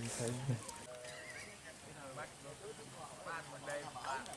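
A man's voice for about the first half-second, then faint, scattered voices of other people.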